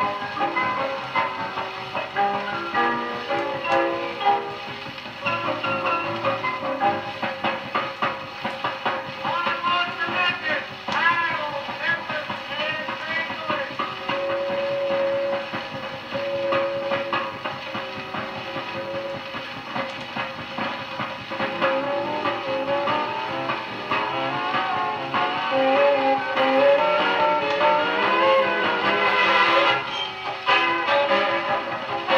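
Dance-band orchestra music played from a record on a portable record player fitted with a thorn needle, the sound cut off above about 6 kHz.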